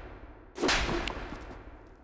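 A hard slap across the face, one sharp crack about half a second in that dies away over about a second.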